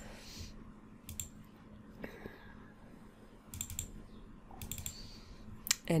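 Computer mouse clicking in short groups of two or three clicks, about a second in, around three and a half seconds and again near five seconds, over a faint steady hum.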